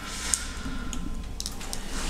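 Room tone: a steady low rumble with a few faint, short clicks, one near the start and a small cluster past the middle.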